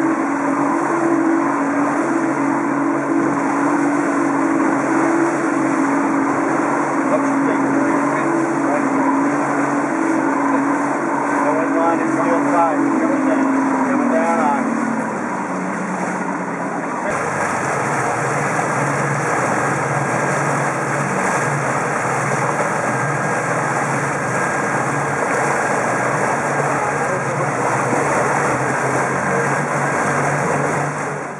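Twin Suzuki 150 outboard motors running steadily with a boat underway, along with rushing water and wind. A little past halfway the engine note falls, as from easing off the throttle. The sound then changes abruptly to a lower, steady running note heard close to the motors, with the wake hissing.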